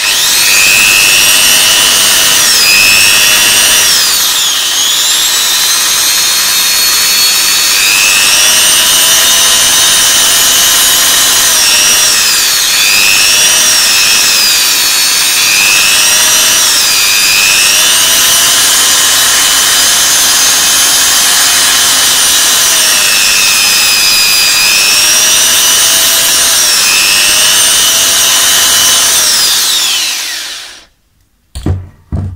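Electric drill running with a small bit, boring out the rubber insulation left inside a charger cable's strain-relief junction. Its motor whine is steady but dips briefly in pitch again and again as the bit bites into the material.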